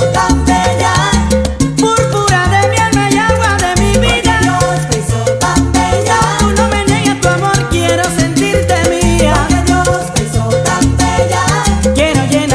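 Salsa music playing, with a steady beat of percussion and a repeating bass line under melodic lines.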